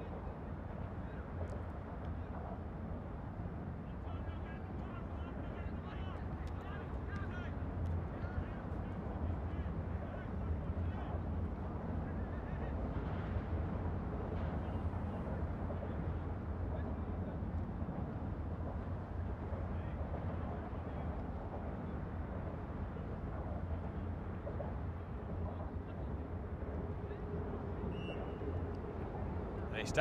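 Open-air ambience at a soccer field: a steady low background rumble, with faint distant shouts from players on the pitch.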